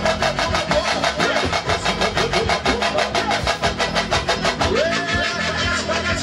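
Pagodão band music playing: fast, busy percussion with electric bass, with no singing.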